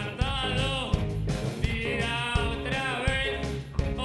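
Live rock band playing: electric guitars, electric bass and drums keeping a steady beat, with a male lead singer singing two phrases into the microphone.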